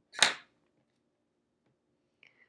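Embroidery floss pulled sharply through the fabric: one short, sharp swish about a quarter-second in.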